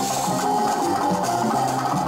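A live band playing salsa music through stage speakers, at an even loudness throughout.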